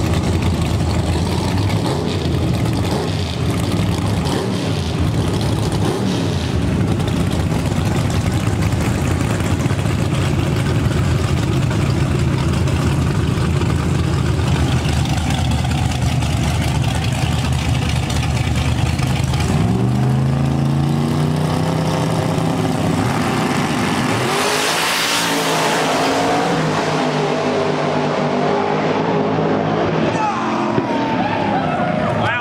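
Drag race car engines idling with a steady low rumble, then launching about two-thirds of the way in, their pitch climbing again and again as they accelerate down the strip, loudest a few seconds after the launch.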